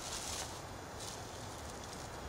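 Quiet outdoor ambience: a faint, steady background hiss with no distinct event.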